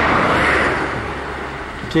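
A steady rushing noise with a low hum underneath, loudest about half a second in and then easing off.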